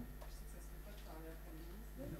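The tail of a round of applause dies away in the first moment, then faint talk from away from the microphone.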